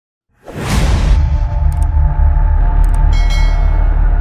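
Channel intro sound design: a whoosh sweeps in about half a second in, then gives way to a loud, sustained deep-bass drone with held tones and a few faint high glints.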